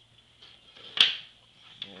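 One sharp click about halfway through, with a short ring after it: a small rare earth magnet from a headphone driver set down on a wooden tabletop.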